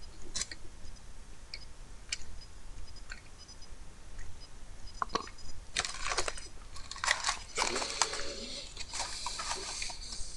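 Eating a small hollow chocolate Easter egg close to the microphone: a few scattered small clicks at first, then a run of dense crunching and chewing over the last four seconds.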